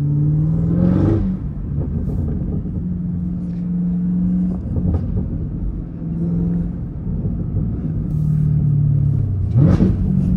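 Supercharged V8 of a Chevrolet Camaro ZL1 1LE heard from inside the cabin while driving. The revs rise briefly about a second in, hold fairly steady, and climb again near the end.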